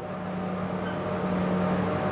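Steady low hum of a running machine, with a single faint click about halfway through.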